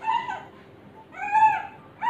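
Shih Tzu puppy crying: two high-pitched whines, the first short and falling, the second longer, rising and then falling, with a third starting at the very end.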